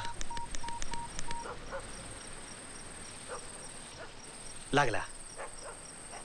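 Mobile phone keypad beeping as a number is dialled: a quick run of short, even beeps lasting about a second and a half. Crickets chirp steadily throughout, and a short spoken word comes near the end.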